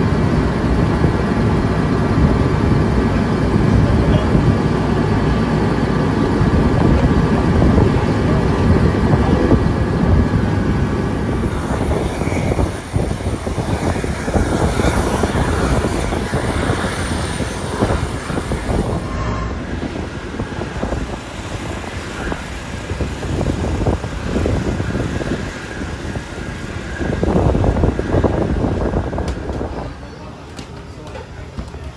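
A loud, steady engine drone for about the first twelve seconds, then a lower, uneven open-air rumble with faint voices.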